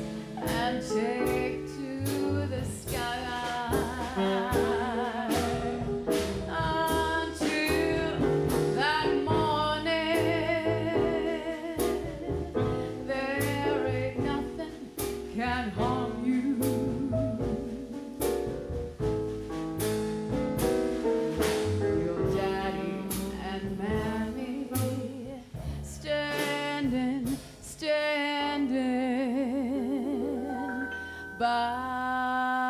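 A woman singing a jazz song with vibrato, accompanied by a live jazz band.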